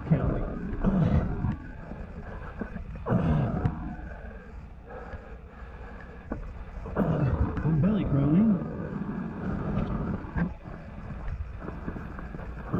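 A man's wordless voice sounds and breathing: three short voiced stretches with sliding pitch, at the start, about three seconds in and around seven to eight seconds in. Between them come scuffing and rustling as he crawls over the dusty dirt floor of a low cave.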